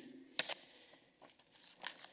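Mostly quiet room tone with a sharp click about half a second in and a brief faint sound near the end.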